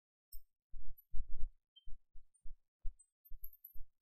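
A run of irregular, muffled low thumps, a few a second, with almost nothing above them; they are loudest a little over a second in.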